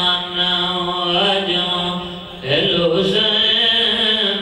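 A man's voice chanting a supplication (dua) into a microphone in long, drawn-out held notes, with a short break for breath about two and a half seconds in.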